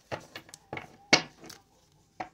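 A tarot deck being handled and cut: a handful of short, sharp card clicks and taps, the loudest a little over a second in.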